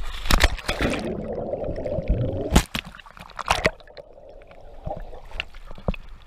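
Sea water splashing around an action camera at the surface as a person jumps in beside it, then the muffled gurgle of bubbles while the camera is under water, broken by sharp splashes about two and a half and three and a half seconds in.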